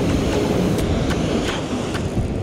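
Ocean surf washing in over wet sand in the shallows, a steady rushing noise.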